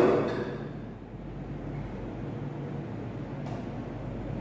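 Steady low background hum with faint hiss, and one faint click about three and a half seconds in.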